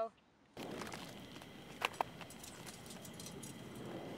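After a brief moment of silence, faint outdoor ambience with light scuffing on dry gravelly ground and two sharp clicks close together about two seconds in.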